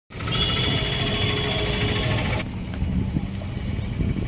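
Low rumble of passing road traffic with a steady whine over it, which breaks off suddenly about two and a half seconds in, leaving a quieter traffic rumble.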